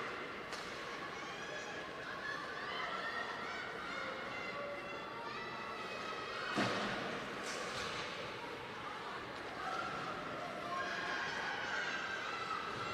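Echoing indoor ice hockey rink during play: high-pitched shouts and calls from voices in the arena run throughout. A single sharp bang, like puck or stick against the boards, comes about six and a half seconds in.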